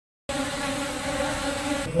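Honeybees buzzing in flight, a steady hum that cuts in abruptly just after the start.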